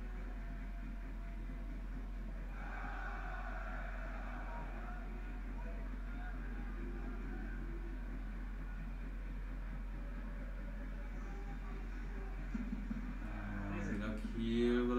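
Quiet room sound: a steady low electrical hum under a faint voice from the football broadcast playing in the background, which grows louder near the end.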